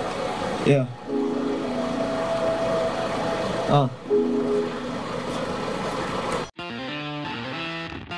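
A rapper's short ad-libs into a microphone, "yeah" and then "oh", over a backing track of long held chords. About six and a half seconds in, the sound cuts off abruptly and a different, guitar-based music track takes over.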